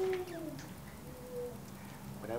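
A short wordless voice sound: a falling hum in the first half second, then a brief higher note a moment later.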